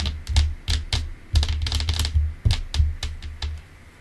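A quick, irregular run of about a dozen sharp clicks, each with a short low thump, close to the microphone; they stop about three and a half seconds in.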